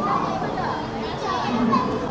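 Outdoor crowd chatter of people walking by, with children's voices among it.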